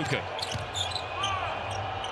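Basketball bouncing on a hardwood court during live play, in a near-empty arena where the court sounds carry.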